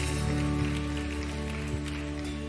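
Live worship band playing a soft instrumental passage of held chords over a steady bass, with no singing.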